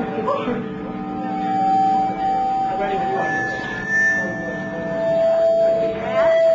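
Electric guitar through an amplifier holding long, steady notes, the pitch stepping down once about four and a half seconds in, with voices murmuring in the room.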